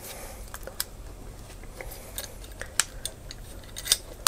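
A few sharp light clicks and handling noise as the DJI X5 Osmo adapter is clipped onto the Osmo handle and its restraining bar is fitted.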